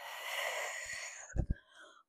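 A woman's long, audible breath through the mouth during a slow roll-up core exercise, lasting about a second and a quarter, followed by two soft knocks about a second and a half in.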